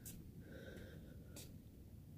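Faint breathing and sniffing close to the microphone: short breath noises near the start and about a second and a half in, with a faint short whistle-like tone about half a second in.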